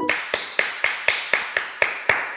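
A person clapping their hands in a steady rhythm, about four claps a second.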